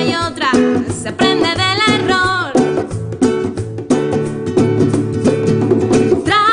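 A woman sings a phrase over a nylon-string classical guitar. From about two and a half seconds in, the voice drops out and the guitar carries on alone with a steady rhythmic strum.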